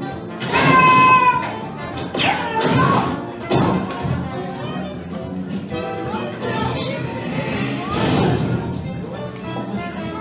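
Cartoon slapstick soundtrack: a monster character yelling and exclaiming over background music, with a few crashes and thumps from his on-screen mishaps. The loudest moment is a yell about a second in.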